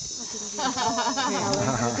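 A steady chorus of night insects, crickets among them, with people's voices talking over it from about half a second in.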